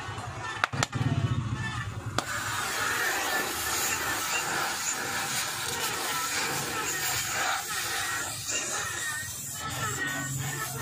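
Gas torch hissing steadily. It starts about two seconds in, right after a sharp click, while the flame is played on a small petrol engine to free its attached water pump.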